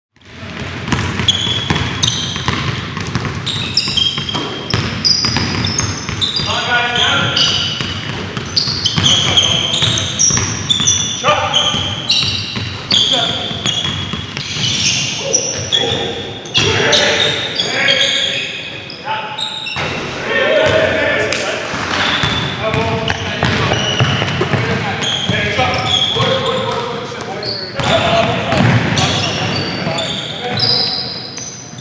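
Basketball game sounds in an echoing gymnasium: sneakers squeaking on the hardwood floor, the ball bouncing, and players calling out, fading in at the start.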